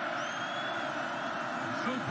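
Stadium crowd noise from the football broadcast: a steady crowd roar with a faint thin whistle early on, as the offence lines up for the snap.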